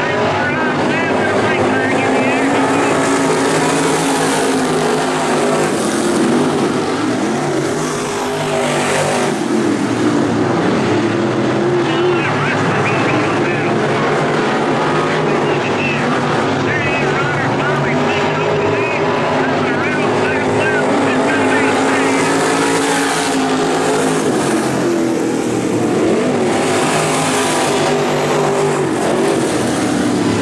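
A pack of dirt late model race cars, V8 engines running hard around the oval, loud and steady, the engine pitch rising and falling as the cars accelerate and lift through the turns.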